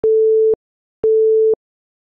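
Countdown timer beeping: two electronic beeps at the same steady pitch, each about half a second long and one second apart.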